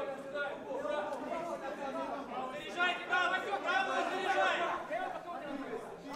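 Many voices chattering and calling out at once from a crowd packed around a bare-knuckle fight ring, fairly quiet.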